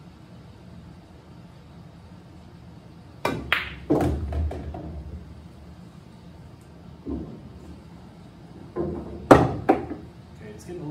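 Pool shot: the cue tip strikes the cue ball a little over three seconds in, followed within a second by the sharp click of the cue ball hitting an object ball and the low thud of the ball dropping into a pocket. A single knock follows near seven seconds, then a quick cluster of sharp clicks near the end.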